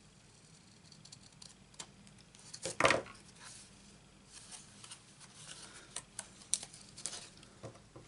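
Paper and card stock handled by hand and shifted on a craft mat, with a louder rustling scrape about three seconds in and small scattered taps and scrapes after.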